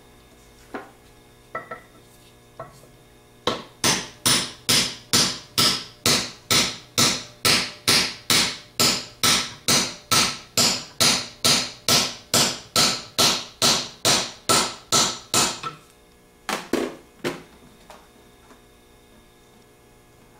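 Hammer tapping on a deep-wall socket to drive a new slip ring down onto a Ford 3G alternator's rotor shaft. A few single taps come first, then a steady run of about two to three taps a second for some twelve seconds, and two more taps near the end.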